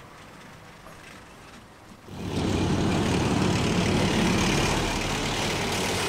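Heavy military vehicle driving past close by: a loud, steady rumble of engine and road noise that comes in suddenly about two seconds in, after a faint, quiet start.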